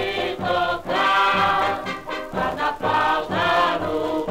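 Samba played from a 78 rpm record: an orchestral passage with no lyrics, its melody moving in phrases about a second long. The sound is thin in the top treble.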